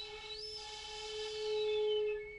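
Shinobue (Japanese bamboo transverse flute) held on one soft, steady low note with some breath noise, growing a little louder toward the end.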